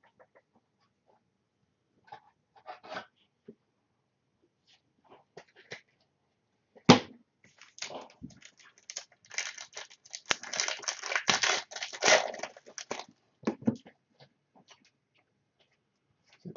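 Trading-card pack wrapper crinkling and tearing as a pack is opened, with light clicks of the cards being handled. A single sharp knock comes about seven seconds in, and the crinkling is densest from about nine to thirteen seconds.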